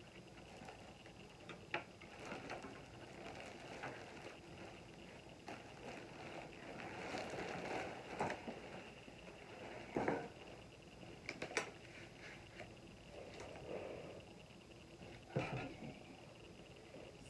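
Rustling and handling of a baby swing's padded fabric seat cover, with scattered light clicks and a few sharper knocks.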